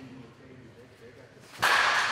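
Low background, then about one and a half seconds in a sudden loud swish of noise that dies away slowly over the next second or so.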